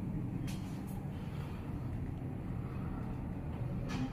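Kone passenger lift car travelling down, a steady low rumble of ride noise from the moving car, with a short click about half a second in and another near the end.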